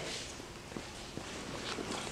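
A few faint footsteps on a concrete floor.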